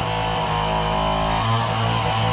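Steady hum and whine of a power tool cutting steel, running without a break.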